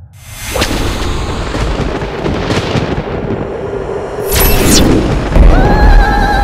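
Film-trailer sound design: a dense swell of noise starts suddenly and carries on. About four seconds in comes a falling swoop, and a deep boom follows, with sustained musical tones coming in near the end.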